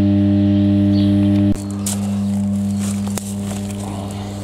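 Large power transformer humming steadily, a low mains hum with overtones. The hum drops in level about one and a half seconds in, and a single click comes near the end.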